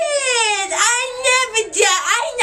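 A boy's high-pitched voice in loud, drawn-out, wordless sing-song shouting, in a few long wavering syllables.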